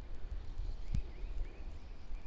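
Wind buffeting the microphone as an uneven low rumble, with one sharper bump about a second in and faint, short high chirps.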